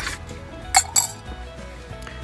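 A metal spoon clinks twice against a stainless steel cup, about a second in, with a brief metallic ring.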